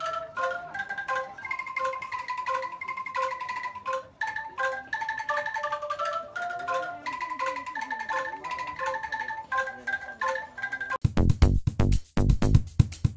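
Angklung, tuned bamboo tubes shaken in their frames, playing a melody of trembling, rattling notes over a repeating low note. About a second before the end it gives way to electronic music with a heavy beat.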